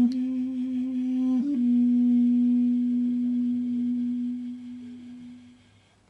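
Armenian duduk playing a slow lullaby melody solo. After a brief dip in pitch, it settles onto one long held low note that fades away near the end.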